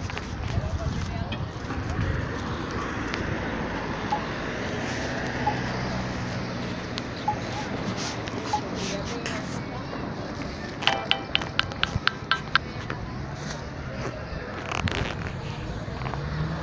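City street ambience: a steady hum of traffic with people's voices. About eleven seconds in comes a quick run of about ten sharp ticks, roughly five a second, lasting under two seconds.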